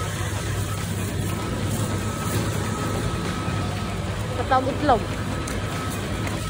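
Shopping trolley wheels rolling over a tiled floor, a steady low rumble with a faint steady hum behind it. A short vocal exclamation with a sliding pitch cuts in about four and a half seconds in.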